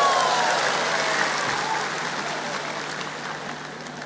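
Large hall audience applauding, with some cheering at the start, the applause gradually dying away.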